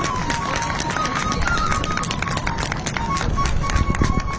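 A flute playing a slow melody that steps downward and then holds near one pitch, over a rapid, irregular patter of taps and thumps.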